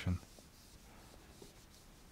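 Faint rubbing of a hand-held eraser wiping marker off a whiteboard.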